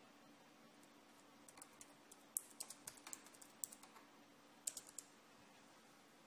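Faint computer keyboard typing: a quick, uneven run of key clicks from about a second and a half in until about five seconds in.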